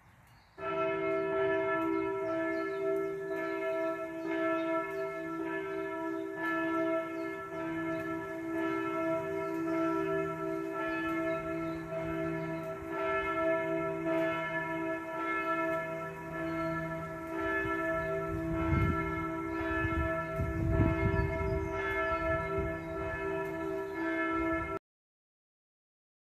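Church bells ringing, several bells sounding together with fresh strikes about once a second, starting suddenly about half a second in.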